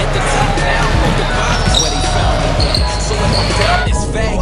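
Live sound of an indoor basketball game: a ball bouncing on the hall floor, a few brief high squeaks around the middle, and players' and onlookers' voices in the background.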